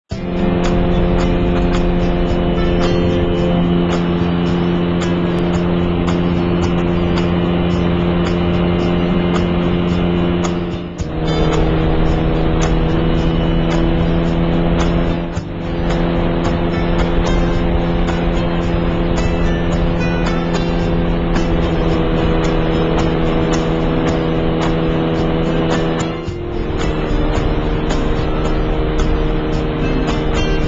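Power parachute engine running at a steady high drone that shifts slightly in pitch at breaks about 11, 15 and 26 seconds in, mixed with background music that carries a steady beat.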